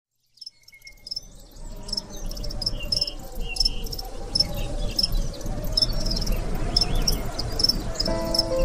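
Insects chirping: short high chirps repeating irregularly over a low steady rumble, the whole fading in over the first two seconds.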